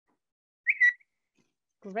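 A short, loud, high whistle-like tone lasting about a third of a second, about half a second in. It first slides up in pitch, then holds one steady note.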